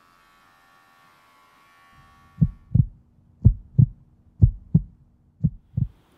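Heartbeat sound effect: four double thumps (lub-dub), about one a second, over a low steady hum, starting about two seconds in.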